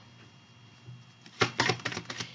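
A deck of tarot cards being shuffled by hand: quiet at first, then a quick run of card slaps and clicks from about one and a half seconds in.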